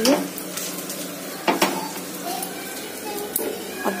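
Oil heating in a kadhai on a gas burner: a low, steady hiss with a faint sizzle. There is a single sharp metallic clink of kitchen utensils about one and a half seconds in.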